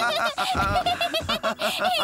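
A cartoon character laughing in a rapid run of short giggles, tickled by a furry car-wash brush roller.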